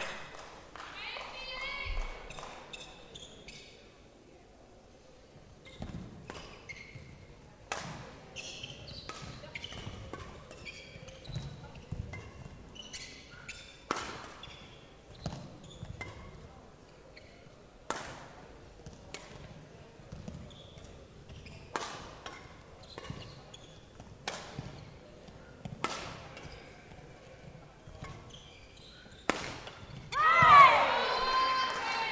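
Badminton rally: rackets striking the shuttlecock, sharp hits about every one to two seconds, exchanged back and forth until just before the end.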